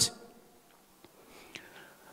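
A man's amplified speech breaks off, leaving a pause of quiet room tone with a faint tick about a second in and a faint, short sound falling in pitch soon after.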